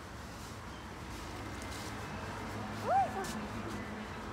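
Steady low background hum. About three seconds in, a person makes one brief voiced sound that rises and then falls in pitch.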